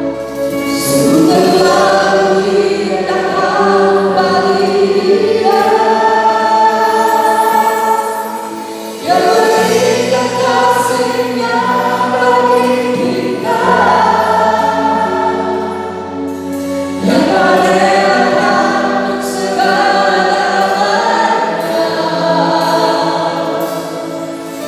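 A small mixed group of men and women singing an Indonesian worship song in harmony into microphones, over an accompaniment of long held bass notes that change every few seconds. The singing dips briefly twice between phrases.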